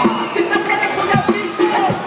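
Loud music with a steady beat that cuts off suddenly at the very end.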